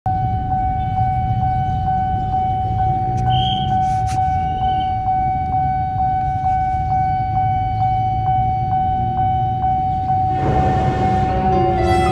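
Railway level-crossing warning alarm sounding: one steady tone pulsing about twice a second, over a low rumble. A short rushing noise comes in near the end.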